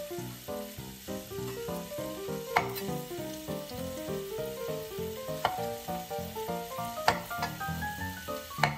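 A kitchen knife slicing mushrooms on a wooden cutting board, with three sharp knocks of the blade hitting the board, over the sizzle of meat frying in a pan. Light background music with a quick melody of short notes plays throughout.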